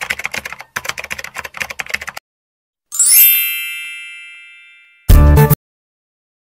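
Editing sound effects over a title card: rapid keyboard-typing clicks for about two seconds, then a bright chime ringing out and fading over about two seconds. A short, loud burst follows about five seconds in.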